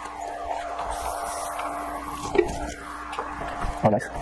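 Small electric air pump running with a steady hum as it inflates a basketball through a needle hose, cutting off near the end.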